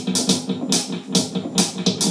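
Instrumental stretch of a song: a steady drum beat with sharp cymbal or snare hits, over sustained guitar and bass tones.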